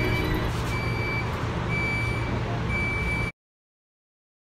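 Steady low rumble inside a light-rail train car, with a high electronic beep repeating about once a second. The sound cuts off suddenly near the end.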